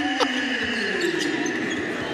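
Basketball game sound on a hardwood court: a ball being dribbled over steady arena crowd noise. A sustained tone slides slowly down in pitch through the first part.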